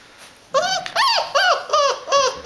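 Yellow Labrador puppy yipping: about half a second in come four high-pitched yips, each rising and falling in pitch, in quick succession. The yipping is taken for hunger.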